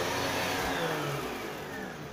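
Upright vacuum cleaner's motor running with a whine that slowly falls in pitch and fades a little.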